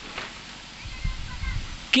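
A pause in a man's talk over a microphone, with low muffled thumps and rumble on the microphone in the second half. His voice comes back right at the end.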